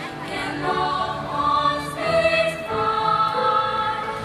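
Choir singing a run of sustained held notes that change pitch every second or so.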